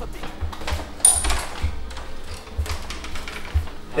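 A door handle and latch click sharply once, about a second in, over the low bass notes of hip-hop backing music.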